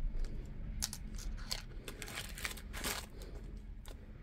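Clear plastic bags crinkling in handling, with irregular small clicks and rustles as diamond painting tools are put back into a small zip bag.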